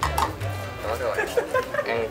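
Upbeat swing-style background music ending within the first second, followed by indistinct talk and chatter from several people.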